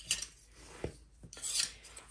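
Plastic spoons being picked up and handled on a countertop: a few light clicks as they knock against each other and the surface, then a short scraping rustle near the end.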